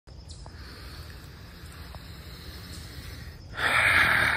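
A person's loud, breathy exhale through an open mouth, starting suddenly about three and a half seconds in, after a stretch of faint outdoor background with light rumble.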